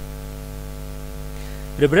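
Steady electrical mains hum with a stack of overtones, running under a pause in speech.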